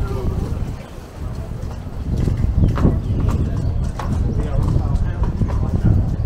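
Busy pedestrian street ambience: passersby talking, with irregular footsteps and knocks on the pavement over a constant low rumble.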